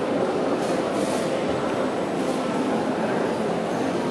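Steady background din of a large indoor exhibition hall: a constant roar with indistinct, far-off voices mixed in.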